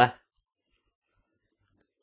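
The last syllable of a spoken Arabic phrase fades out at the very start. Then comes near silence, broken only by one faint, very short, high click about halfway through.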